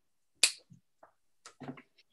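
A single sharp click about half a second in, followed by a few faint short clicks and soft noises.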